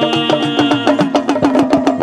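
Folk instrumental passage: a small hourglass drum (deru) struck with a thin stick in quick, even strokes, about eight a second, each note bending in pitch, over a sustained string tone that slowly falls.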